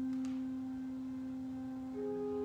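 Pipe organ holding a single soft note, a steady, almost pure tone, with fuller chords coming back in right at the end.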